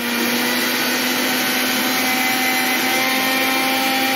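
Electric mixer grinder running at a steady speed, its motor giving a constant whine over a dense rushing noise, as it grinds dried moringa leaves into powder.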